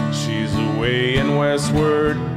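Acoustic guitar strummed in a steady country-folk accompaniment, with a voice singing a held, bending melody line over it.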